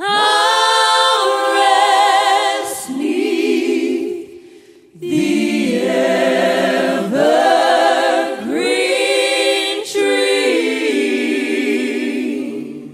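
A vocal group singing a country gospel song in close harmony, unaccompanied, with vibrato on the held notes. The singing breaks briefly between phrases a little before the middle.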